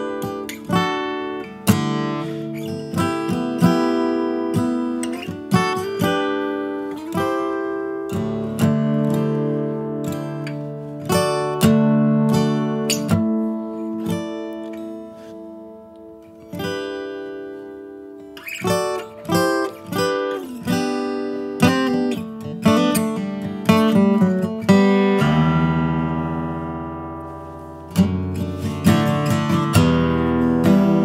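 Steel-string acoustic guitar played solo: picked melody notes over low notes left ringing as drone tones, with a fuller strum about 25 seconds in.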